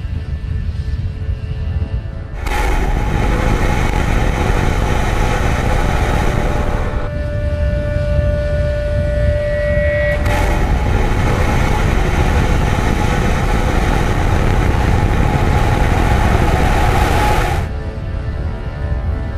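Background music, twice covered by the loud, even rushing noise of Starship SN8's Raptor rocket engines firing: from about two seconds in to about seven, and again from about ten seconds in until just before the end.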